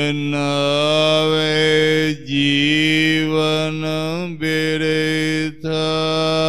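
A man's voice chanting Gurbani verses in long, drawn-out held notes: the melodic recitation of the Hukamnama. It breaks off briefly about two seconds in and again near the end.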